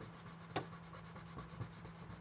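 Crayola colored pencil scratching faintly across drawing paper as yellow is shaded in with firm strokes, with one sharper tick about half a second in.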